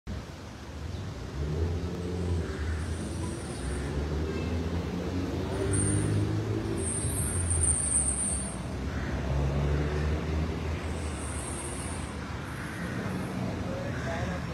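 Street traffic: several cars driving through an intersection, their engine sound swelling and fading as each one passes.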